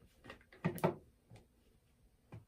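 A few short, light knocks and clicks as props are handled on a tabletop. Two of them come close together a little past halfway.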